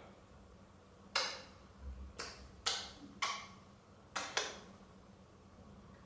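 Repeated kisses on a plastic bottle: six short, sharp lip smacks, the last two close together.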